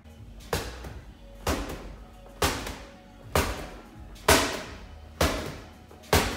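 Medicine ball slammed against a wall in rotational throws, six sharp thuds about a second apart, each ringing briefly, over background music.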